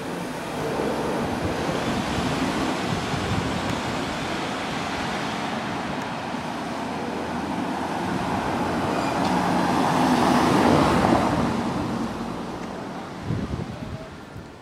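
Cars moving slowly on a brick-paved street: a 1960s Mercedes coupé pulling away and a modern Mercedes passing close by. Steady engine and tyre noise swells to its loudest about ten seconds in as the modern car goes past, then fades.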